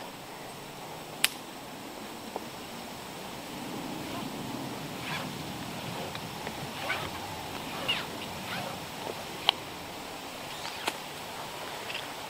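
Climbing gear being handled while a lineman's belt is taken off: a few sharp metal clicks, the loudest about a second in, with soft rope and strap rustling between them.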